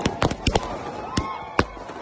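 Fireworks going off: a run of sharp, irregular bangs and crackles, several a second, with faint whistling tones between them.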